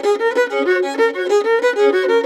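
Fiddle playing a reel in the old-time style: a fast, even run of short bowed notes.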